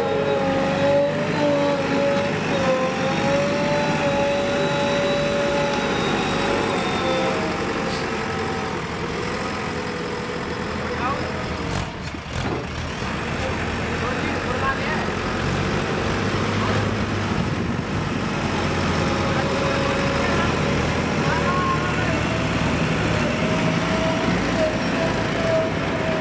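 Diesel engine of a JCB 3DX backhoe loader running under load as it drives and works its loader bucket. A wavering whine rides over the engine rumble, stronger near the start and the end than in the middle.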